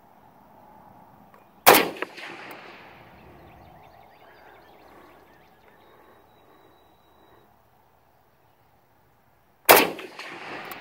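Two shots from an SKS rifle firing 7.62×39 plastic-core training rounds, one about two seconds in and one near the end, each trailing off in a long echo.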